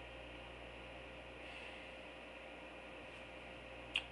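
Room tone: a steady faint hiss with a low electrical hum, and one brief click near the end.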